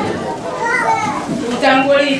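Speech through a microphone and loudspeaker, with children's voices in the background.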